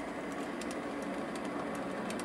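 MX210 mini lathe running, its spindle turning a six-jaw chuck with a steady, even hum.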